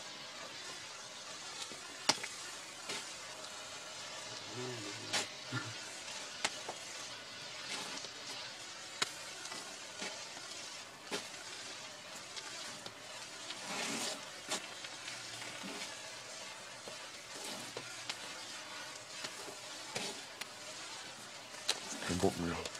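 Red Bengal flare (pyrotechnic cylinder flame) burning with a steady sizzling hiss, with scattered sharp crackles through it.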